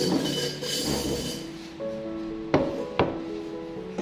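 Background music, with some rustling near the start, then two sharp knocks about half a second apart past the middle as a ceramic bowl of rice is set down on a wooden table.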